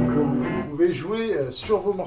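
A recorded rock song with guitar, streamed over Bluetooth and played through the Marshall Code 25 combo amp's speaker, cutting off about half a second in when it is paused; a man's voice follows.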